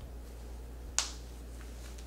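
A snap fastener clicking shut once, about a second in, as the front of an insert is snapped into a cloth diaper cover.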